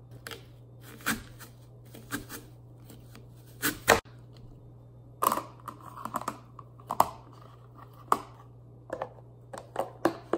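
Scattered clicks and knocks of clear plastic food containers and a plastic lid being handled on a stone countertop as apple slices are dropped in. The sharpest clicks come just before the middle and again a little later.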